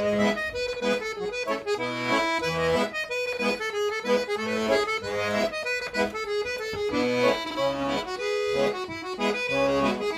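A solo piano accordion plays a Scottish folk tune. The melody moves in quick notes over a steady left-hand accompaniment that alternates bass notes and chords.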